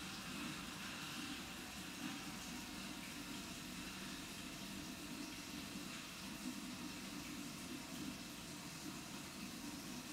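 Steady rushing of tap water running through a filter pump (water aspirator) that draws a vacuum on a Büchner flask, while a water sample is poured into the Büchner funnel and sucked through the filter paper.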